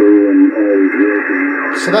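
A radio amateur's voice received on single-sideband in the 21 MHz band through an SDRplay RSP receiver and HDSDR software. It sounds thin and narrow-band, with a steady hiss of band noise behind it.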